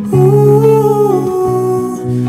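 Music: a male voice singing a held, wordless line, like humming, over acoustic guitar. The note shifts to a lower pitch a little past halfway.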